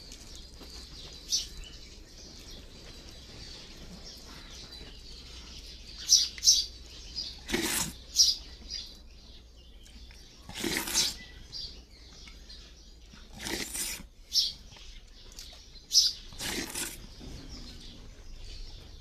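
Small birds chirping in short, sharp, high calls every few seconds, with four brief rustling noises scattered among them.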